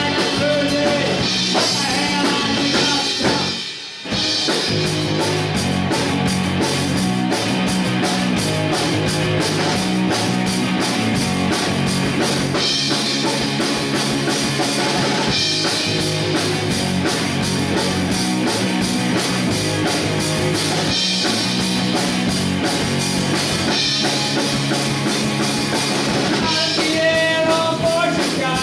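Live rock band playing electric guitar, bass guitar and drum kit, with a steady driving beat. The band drops out briefly just before four seconds in, then comes back in at full volume.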